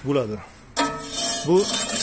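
A steel scraper dragged through coarse concrete mix over the steel mould of a cinder-block machine: a loud rasping scrape with a metallic ringing, starting about a second in, under a man's speech.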